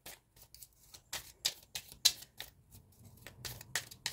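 A tarot deck shuffled by hand: a quick, irregular run of light card snaps and flicks, several a second.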